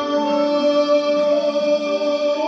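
A live jazz-folk band playing: a male voice sings long held notes over violin, double bass, piano and drums.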